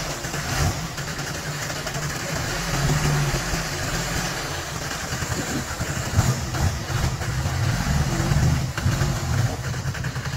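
Engine of the homebuilt Buffalo off-road vehicle running at low speed, a steady low rumble.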